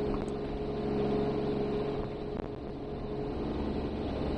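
A car being driven, heard from inside the cabin: a steady engine hum over road noise.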